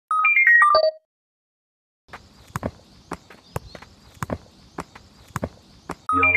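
A short descending chime jingle, then after a second's silence a soccer ball being juggled: about ten light thuds of foot and shoe on the ball over four seconds, some in quick pairs.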